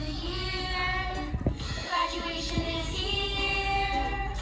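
A child singing a song over instrumental backing music.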